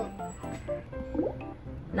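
Background music with a few short, drop-like blips; two quick pitch glides come a little past the middle.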